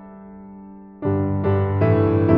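Solo piano improvisation: held notes fade away quietly, then about a second in a loud chord with deep bass notes is struck, followed quickly by two more chords.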